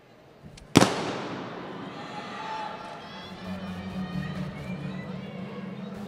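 A starting gun fires once, a sharp bang about a second in that echoes through the indoor arena, starting a 60 m sprint. Spectators' cheering and shouting rises after it as the runners race.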